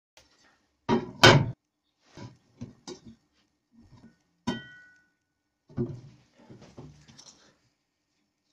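A steel circular saw blade set down and handled on a wooden workbench: two heavy thumps about a second in, a few lighter knocks, then a sharp clank with a brief metallic ring about halfway, followed by lighter scraping and knocks.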